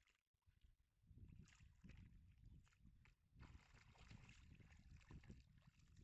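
Faint splashing and sloshing of a Portuguese water dog puppy wading through shallow water, busiest in the second half, over a low rumble.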